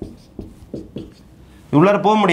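Marker pen stroking across a whiteboard in a quick run of short strokes, drawing shading lines across a circle. A man's voice starts near the end.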